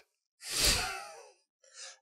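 A man's breathy sigh, starting about half a second in and fading away over about a second, followed by a brief faint breath near the end.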